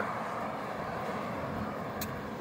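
Steady outdoor background noise, an even low rumble with no distinct events, typical of traffic noise near a road.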